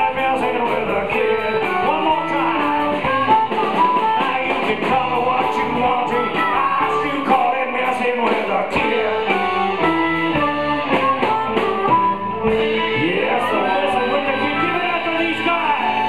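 Live band playing: electric guitars and bass over a drum kit, with steady cymbal strokes throughout.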